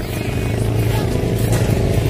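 A small engine running steadily at an even, low hum.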